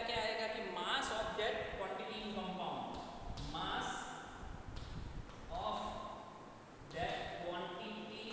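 A man's voice talking in a lecture.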